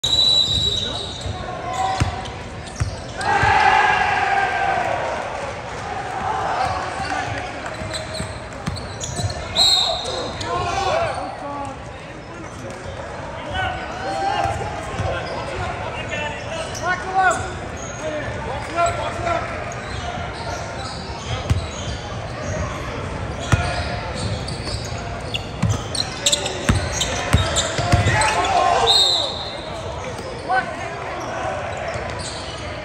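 Crowd chatter echoing in a school gymnasium, with basketballs bouncing on the hardwood floor. Short high referee whistle blasts sound near the start, about ten seconds in, and just before the end.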